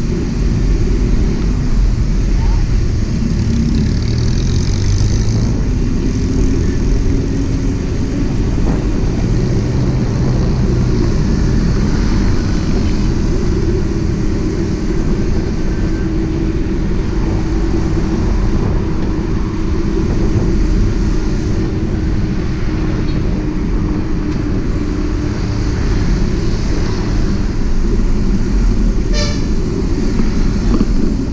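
Wind rushing over the camera's microphone with a small motorcycle engine running steadily at road speed, a low rumble throughout.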